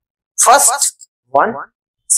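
Speech only: a man's voice saying two short bursts, the first about half a second in and the second past the middle, with dead silence before and between them.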